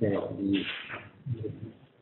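A man speaking, his voice trailing off about a second in, with a few faint low voiced sounds after.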